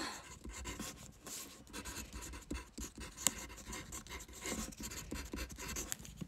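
Pen writing on paper: a quiet run of small, irregular scratches and taps.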